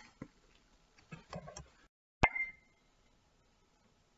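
Quiet room with a few faint soft sounds, and one sharp pop with a short high ring just over two seconds in.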